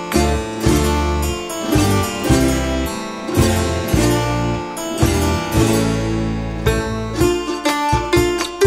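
Instrumental folk music on plucked strings: strummed acoustic guitar with a plucked melody and low bass notes underneath, in a lilting rhythm.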